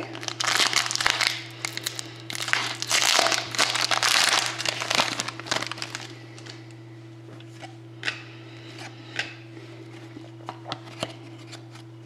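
Foil trading-card pack (Panini Crown Royale hockey) being torn open and crinkled by hand for the first half, then a few light clicks and slides as the cards are handled, over a steady low hum.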